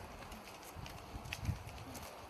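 Faint footsteps of several people walking on pavement: irregular soft thumps and light scuffs, the strongest about one and a half seconds in.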